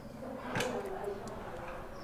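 A single faint click about half a second in, a door latch being tried, with faint voices.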